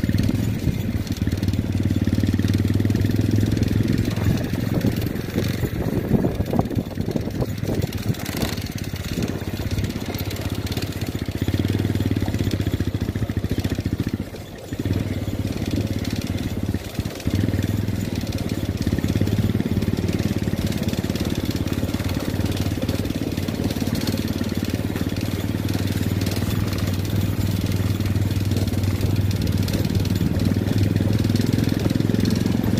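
Motorcycle engine running steadily while the bike is ridden. Its level drops briefly about halfway through and again a couple of seconds later.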